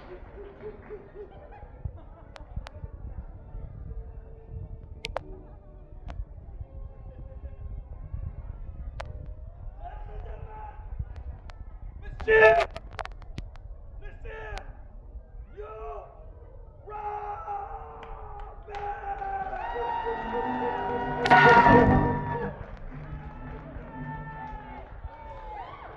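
Indistinct voices and chatter echoing in a large hall, with a brief loud outburst about halfway through and a longer, louder burst of voices near the end.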